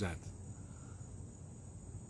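Faint, steady, high-pitched trilling of insects, with no break.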